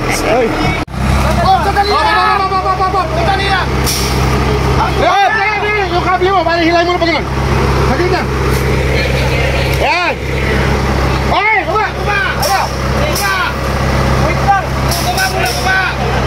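Off-road buggy's engine running at low, steady revs as it crawls through deep mud, with voices shouting over it several times.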